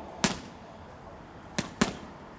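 Gloved punches smacking against thick handheld GroupX kick pads: one sharp smack, then a quick double about a second and a half later.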